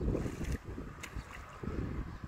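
Wind buffeting the microphone in an uneven low rumble, with a single light click about a second in.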